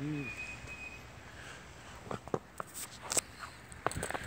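Footsteps crunching in snow: a few irregular, faint crunches in the second half.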